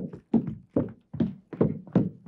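Footsteps coming quickly down an indoor staircase: a steady run of hard steps, about two and a half a second.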